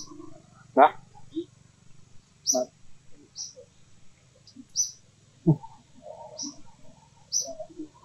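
Birds chirping in short, high notes that recur about once a second, with a few brief, louder, lower animal calls in between.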